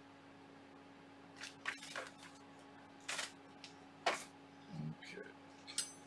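Metal 3D-printer kit parts being handled on a table: a scattered series of sharp clicks and knocks, starting about a second and a half in, over a faint steady hum.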